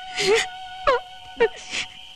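A person sobbing and wailing in short breathy bursts that fall in pitch, several times over soft sustained background music.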